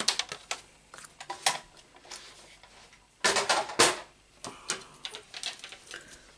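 Sheets of paper and card being handled on a craft table: crisp rustling with light clicks and taps, and a louder rustling flurry about three seconds in.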